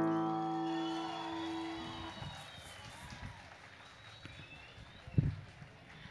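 The final chord of a bandola llanera and its accompanying string band rings out and fades away over about two seconds as the piece ends. Faint stage ambience follows, with a single low thump about five seconds in.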